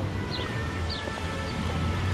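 Small birds chirping, short falling calls about twice a second, over a steady low rumble.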